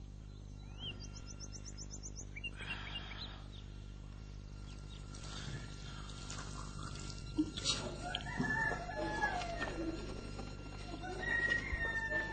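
Chickens clucking in the background, with a rooster crowing near the end.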